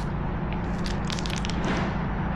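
Steady low street rumble picked up by a handheld camera's microphone. About a second in comes a short run of clicks and rustles from hands handling the camera gear.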